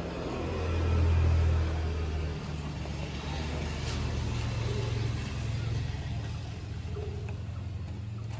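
Low engine rumble of a nearby road vehicle, swelling about a second in and then easing to a steady level.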